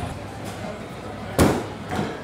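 A wooden strongman log dropped from overhead onto rubber drop pads: one heavy slam about one and a half seconds in, ringing briefly.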